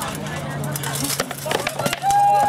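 Rattan swords striking shields and armour in armoured sword combat: a knock at the start, then a quick run of sharp knocks from a little past a second in, over background voices.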